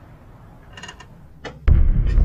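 An electronic keypad door lock being unlocked: a few light clicks with a brief tone, then a latch click as the door opens. Near the end, loud music with deep thuds comes in and covers it.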